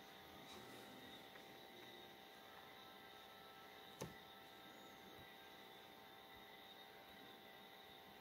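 Near silence: faint steady room hiss and hum, with one short click about four seconds in, a fingertip tapping the phone's touchscreen.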